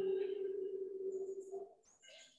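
A single steady hummed tone from a person's voice, carried on a long out-breath, trailing off and fading away about one and a half seconds in.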